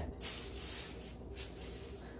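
Rustling handling noise as grocery bags and items are moved about, a continuous dry rustle with one brief louder scrape about one and a half seconds in.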